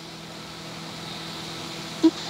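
Steady low hum with a faint hiss: room tone, with no other distinct event.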